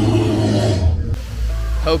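Steel roller coaster train running along its track, a loud rumbling rush with riders' voices mixed in, cutting off abruptly about a second in; a low wind rumble on the microphone follows.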